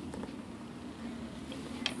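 Faint steady background noise with no distinct event, and a few small clicks near the end.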